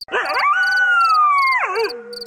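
A dog howling: one long howl that wavers as it rises, holds, then slowly falls and trails off. Crickets chirp steadily beneath it, about three chirps a second.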